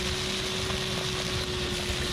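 Shop vacuum running with a steady whine, its hose nozzle sucking stones and grit out of a broken underground electrical conduit.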